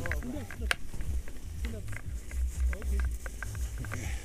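Wind buffeting the microphone with a steady low rumble, under faint voices and scattered light clicks and rustles of harness gear.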